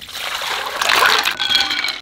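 Water poured from a glass bowl into a larger glass bowl, splashing steadily, with a pitched ring joining in over the second half.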